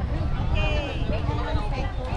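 Indistinct background voices of people talking over a steady low rumble, with a brief high-pitched call about half a second in.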